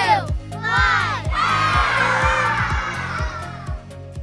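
Children's voices calling out the last numbers of a countdown, then a group of children shouting together in one long cheer from about a second and a half in, fading out near the end, over upbeat children's music with a steady beat.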